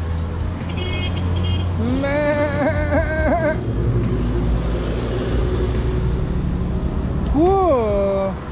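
Goats bleating: a drawn-out wavering call a couple of seconds in and a shorter rising-and-falling one near the end, over a steady low rumble.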